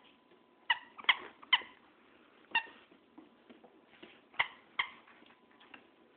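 A small dog giving short, high-pitched yips during play, six of them, three in quick succession and then three more spaced out.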